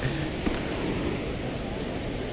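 Steady rush of water pouring over a dam spillway.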